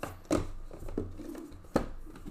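Hands handling sealed trading-card boxes and hard plastic card cases on a table: three sharp knocks as they are set down, the first and last loudest, with some rubbing between.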